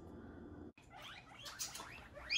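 Guinea pigs wheeking faintly, a run of short rising squeaks starting about a second in: the excited call guinea pigs give when they expect food.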